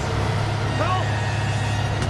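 Steady low rumble of a heavy truck's engine, with a brief voice-like sound about a second in.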